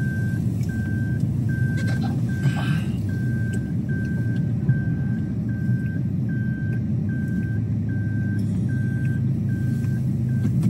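Car cabin rumble from a car driving slowly, with a dashboard warning chime beeping evenly, a bit more than once a second.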